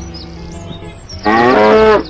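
A single loud cow-like moo, lasting under a second, starting about a second and a quarter in and cutting off suddenly.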